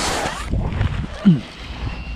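Wind rumbling on the microphone outdoors, with a burst of rustling at the start and a short falling tone about a second and a quarter in.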